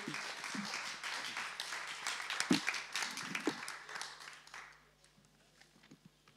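Audience applauding, a dense patter of many hands clapping that dies away about four and a half seconds in.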